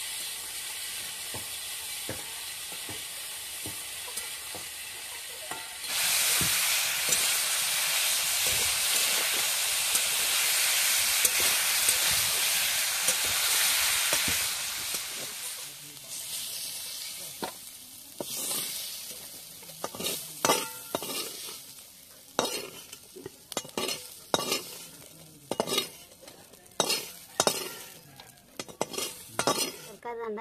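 Pointed gourd frying in oil in an aluminium wok, a metal spatula stirring and scraping against the pan. The sizzle jumps much louder about six seconds in and dies down after about fifteen seconds; from then on it is mostly sharp, repeated scrapes and clinks of the spatula on the metal.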